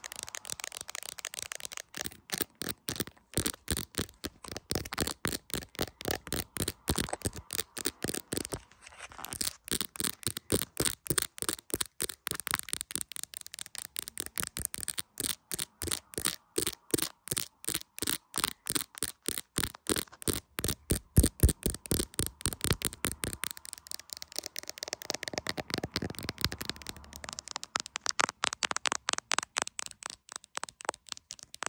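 Long nails tapping fast on an iPhone's camera lenses and clear plastic case: a rapid run of sharp clicks, many a second, with one brief pause about nine seconds in.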